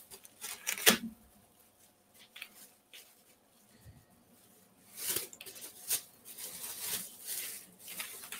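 Bubble wrap being handled and folded around a mask by hand: faint, scattered plastic rustling and crackling, with a sharper crackle about a second in and steadier rustling in the second half.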